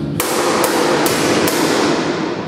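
Four sharp, evenly spaced blows of a long stick swung overhead, about two a second, each ringing on briefly.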